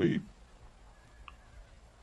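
A man's voice ends a word, then near-quiet room tone with one faint, short click just past the middle.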